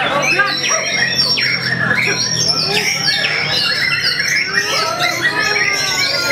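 Several caged white-rumped shamas (murai batu) singing at once: dense overlapping whistles, quick sweeping phrases and rapid trills, with people's voices underneath.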